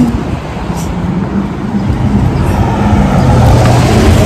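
Loud, steady low rumble of street traffic, picked up by a handheld phone's microphone.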